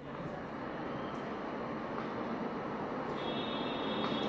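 Steady rushing background noise on an open remote-guest microphone line, slowly getting louder, with a faint high whine joining about three seconds in.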